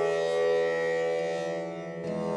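Slow meditative Indian-style instrumental music: a long held flute note over a sustained drone, softening slightly near the end.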